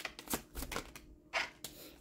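Tarot deck being shuffled by hand: a quick run of card flicks and slaps, thinning to a few single flicks after the first half second.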